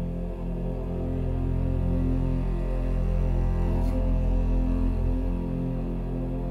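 Slow, sustained ensemble music with low bowed strings holding a deep drone under long held chords, swelling slightly in the middle.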